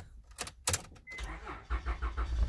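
Car engine being cranked by its starter motor, fed from a supercapacitor bank drained to about 10.3 volts. A couple of clicks come first, then the low cranking rumble builds from a little over a second in as the voltage sags under the starter's load.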